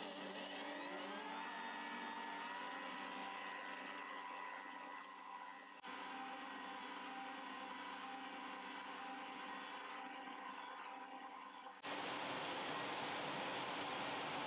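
Electric stand mixer switched on, its motor whine rising in pitch over the first couple of seconds and then running steadily as it mixes bread dough. About two seconds before the end it gives way to a steady hiss of rain.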